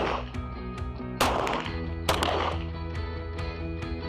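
Two pistol shots about a second apart, a little over a second in, each a sharp crack with a short ringing tail, over steady background music.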